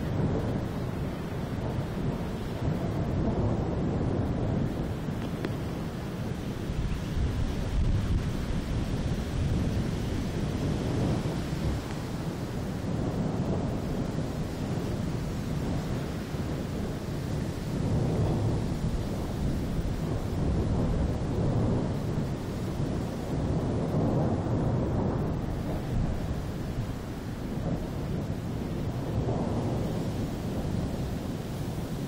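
Long rolling thunder from a thunderstorm, an unbroken low rumble that swells and eases several times.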